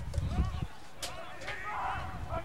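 Outdoor lacrosse field sound picked up by the broadcast microphone: faint, distant shouts from players, a low rumble at the start, and a single sharp knock about a second in.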